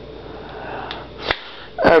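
A person sniffing, a soft breathy noise, then a single sharp click. Speech starts near the end.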